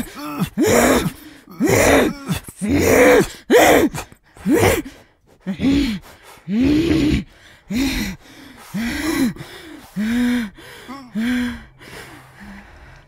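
A woman's voice laughing in gasping, breathy bursts, about one a second, each rising then falling in pitch. The bursts grow somewhat weaker toward the end.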